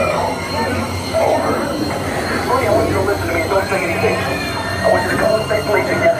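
A steady low rumble with high squealing tones over it, mixed with voices: the sound effects of a haunted-house maze.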